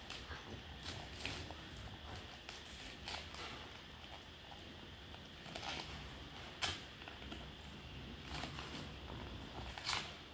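Faint rustling and crinkling of a paper gift box as its folded flaps are slowly pulled open by hand, in scattered short crackles, the loudest about two-thirds of the way through.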